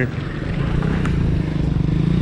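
Road traffic passing close by: a small car drives right past and a small motorcycle's engine hums steadily as it approaches, rising slightly in pitch.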